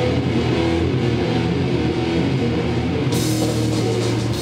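Live crust-grind punk band playing loud distorted electric guitars and bass over a drum kit. The sound turns suddenly brighter about three seconds in as the cymbals crash in.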